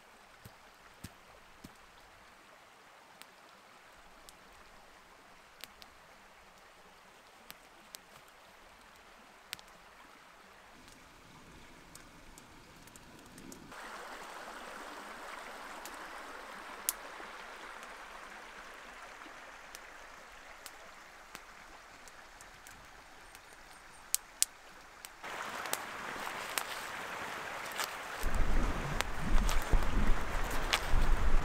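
Faint scattered crackling clicks from a small campfire. About a third of the way in, a brook rushing over rocks comes in as a steady water noise and grows louder later. Near the end a loud low rumble rises over it.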